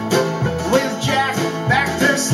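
Live country band music: acoustic guitar strummed over a steady bass beat, in an instrumental passage between sung lines.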